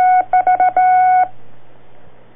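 A single steady tone keyed on and off in Morse code, short dots and longer dashes, stopping about a second and a half in: the telegraph-style signature that opens a 1940s radio newscast. It comes through an old narrow-band broadcast recording with a low steady hum under it.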